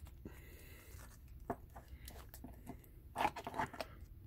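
Faint handling sounds of a sleeved trading card being slid into a rigid clear plastic top loader: light scrapes and clicks, with a quick cluster of them a little after three seconds in.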